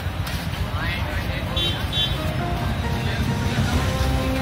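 Background music over street sound: traffic and voices of people talking.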